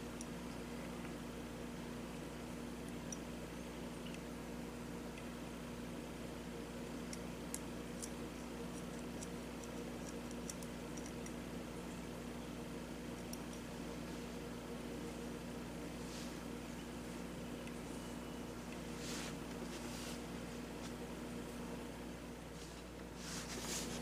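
A low steady hum under quiet room tone, with a few faint clicks and rustles as small steel trigger and sear parts of a lever-action rifle's lower tang are handled, a few slightly louder near the end.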